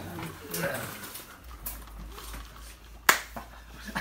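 Low voices in the first second, then a single sharp click about three seconds in.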